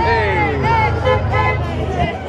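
A crowd of young people shouting and hollering in high, sliding calls over a low steady hum.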